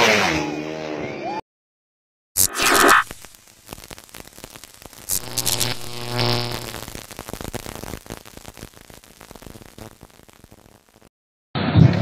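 Drag-race motorcycle engine revving hard, its pitch gliding up, cut off abruptly after about a second and a half. Then comes edited sound-effect audio under title cards: a sharp hit about two and a half seconds in, noisy effects, and a short pitched sound in the middle. Crowd noise returns near the end.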